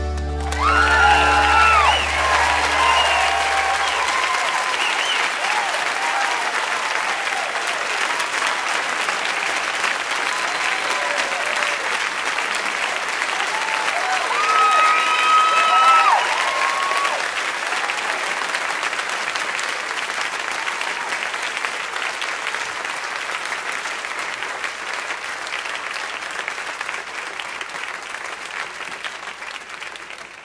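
A large concert audience applauding and cheering, with whoops and yells rising over the clapping twice, at the end of a song. The band's last low note dies away in the first few seconds, and the applause slowly fades toward the end.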